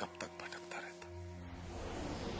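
Soft dramatic background score: sustained held tones under the last faint, breathy syllables of a man's speech, then a hissing swell of music rising in from about one and a half seconds in.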